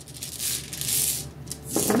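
Small hard pieces rattling inside a cloth pouch as it is shaken by hand, in two bursts, the second brief.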